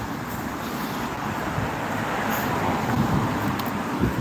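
Road traffic: cars driving past on the road, their tyre and engine noise swelling to a peak about three seconds in as a car goes by.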